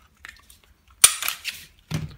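Glock 34 pistol being field-stripped: a few faint clicks, then about a second in a sharp metallic clack and a short rattle as the steel slide is slid forward off the polymer frame.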